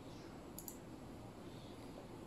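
Two faint, quick clicks of a computer mouse button, a fraction of a second apart, over low room hiss.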